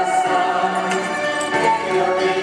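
A choir singing long held notes with no clear words.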